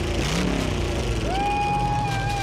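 Hot-rodded vintage Chevrolet's engine running, its revs rising briefly twice. A little past a second in, a steady high tone comes in and holds.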